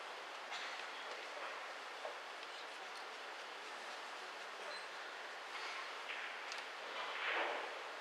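Pool balls rolling over the cloth after a shot, with a few soft clicks of balls touching and a louder rattle near the end.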